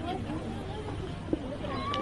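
Faint background chatter of a crowd, high children's voices among it, with one brief knock about a second and a half in.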